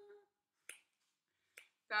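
Two short, sharp clicks about a second apart.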